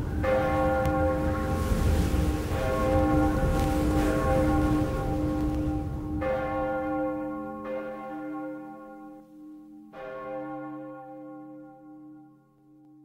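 A large bell tolling, about five strokes a couple of seconds apart, each ringing on and slowly dying away. A low rushing noise under the first half fades out.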